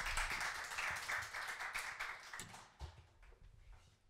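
Applause from a small audience that thins out and dies away over about two and a half seconds, leaving a few scattered claps.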